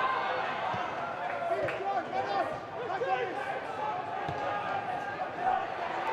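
Players shouting to each other across a football pitch in an empty stadium, several scattered voices overlapping, with a couple of dull thuds of the ball being kicked.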